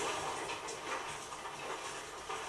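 TV drama soundtrack playing with no dialogue: a steady outdoor din of a gathered army, with horses among it.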